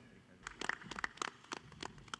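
A faint, quick, irregular run of sharp clicks, about eight to ten a second, starting about half a second in.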